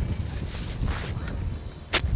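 Wind buffeting the microphone: a steady low rumble with a faint hiss. A single sharp click comes just before the end.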